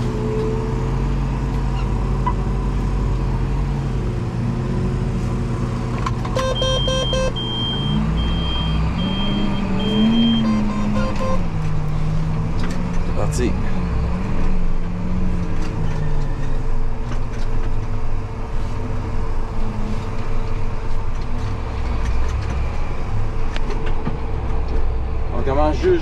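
Engine of a farm machine running steadily, its pitch rising and falling as it is worked between about 8 and 16 seconds in. A series of high, evenly spaced beeps sounds partway through.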